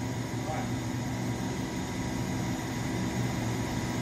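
Okuma B400II CNC lathe turning a large 1.4057 stainless steel shaft under flood coolant: a steady hiss of spraying coolant and cutting, with a faint machine hum.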